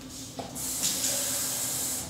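Kitchen tap running, filling a cut-down plastic water bottle: a steady hiss of water that swells about half a second in.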